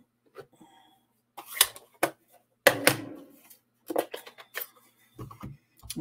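Several separate sharp knocks and clicks as clear acrylic stamp blocks and an ink pad are picked up, set down and pressed on a craft mat, with the rustle of card stock being handled. The loudest knock comes about three seconds in.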